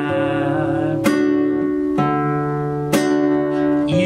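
Nylon-string classical guitar strummed in chords, about one stroke a second, each chord ringing on between strokes.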